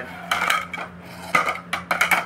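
Bamboo flutes knocking and clattering against one another as they are handled and set down: a couple of knocks early on, then a quick run of sharp knocks about a second and a half in.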